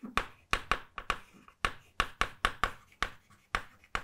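Chalk writing a word on a blackboard: a quick, irregular series of short taps and scrapes, about five a second.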